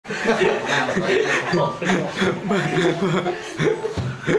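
Speech mixed with chuckling laughter.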